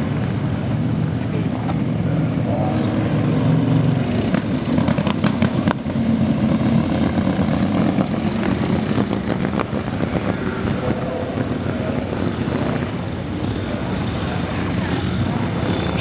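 Antique board-track racing motorcycle engine running on the track, louder for a few seconds in the middle as it passes.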